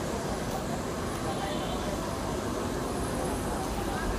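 Steady outdoor background noise with a low, uneven rumble, and faint voices in the background.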